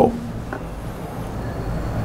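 A pause in a man's speech, filled by steady low background hum and hiss.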